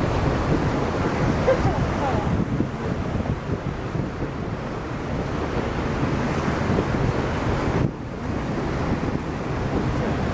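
Wind buffeting the microphone over the rush of water from a paddle steamer's wake, a steady noisy wash. The sound drops off abruptly about eight seconds in, then carries on.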